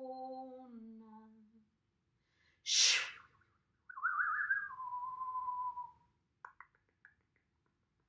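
A woman's hummed tone that steps down slightly in pitch and stops in the first two seconds, then a short, sharp blown breath. She then whistles: a warbling start that settles into one steady, slowly falling note for about two seconds. A few faint clicks follow near the end.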